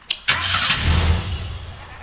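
A man imitating a motorbike being started, done with his mouth into a microphone: a short click, then a rumbling engine 'brrm' that fades out over about a second and a half.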